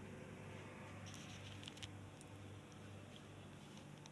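Faint steady hum of a gas boiler's circulation pump running in its air-purge mode, switched on by DIP switch 1 to drive air out of the heating system through the air vent. Faint light rustles and small clicks come about a second in.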